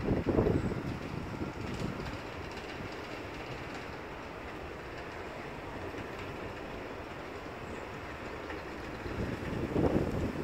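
Steady rumble of vehicle traffic with wind on the microphone, louder for about the first second and again near the end, as a police car drives slowly into the car park.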